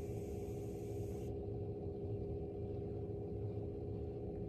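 A low, steady hum with a few sustained tones; the higher frequencies drop away abruptly about a second in.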